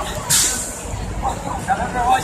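A bus's air brakes letting off a short hiss about a third of a second in, followed by voices calling, over a low wind rumble on the microphone.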